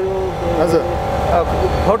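A man's voice speaking in short phrases close to the microphone, over a low steady traffic rumble that swells for a moment around the middle.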